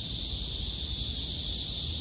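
A steady, high-pitched insect chorus, with a low rumble underneath.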